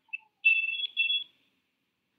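A short high blip, then two steady high-pitched electronic beeps back to back, each made of two tones sounding together.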